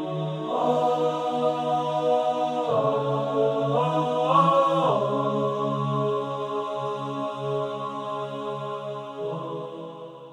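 Background music of slow, held wordless vocal chords that shift a few times, fading out near the end.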